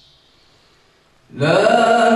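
After a short quiet lull, a man's voice breaks in loudly about a second and a quarter in and holds a long, melodic note of Quran recitation (tilawat).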